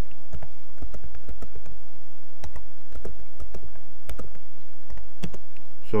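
Typing on a computer keyboard: a run of irregular key clicks as a line of numbers is entered.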